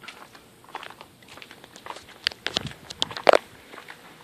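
Footsteps climbing onto a composite deck: a few quiet scuffs, then a cluster of sharp knocks from about two seconds in, the loudest a little before the end.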